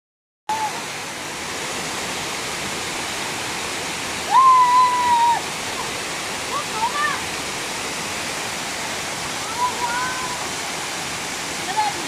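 Waterfall pouring over a rock face: a steady rush of falling, splashing water. A child's high voice cries out in one long held call about four seconds in, with shorter cries around seven and ten seconds.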